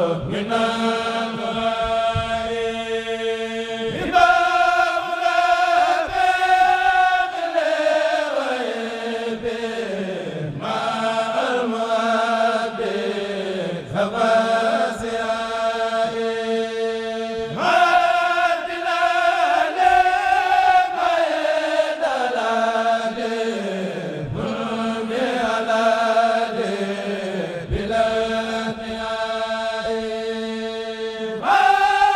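A Mouride kurel, a group of men, chanting a xassida (Sufi devotional poem) in unison without instruments, amplified through microphones. The chant moves in long phrases that each slide down in pitch, over a steady held low note.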